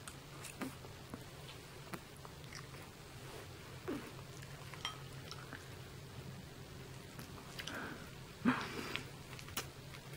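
A person chewing a mouthful of chicken enchilada close to the microphone: soft, scattered mouth clicks and smacks, with a louder mouth sound about eight and a half seconds in.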